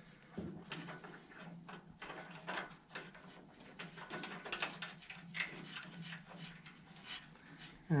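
Scattered light metallic clicks and taps of a brake pedal shaft and its small bronze thrust cap being handled and fitted by hand, over a faint steady hum.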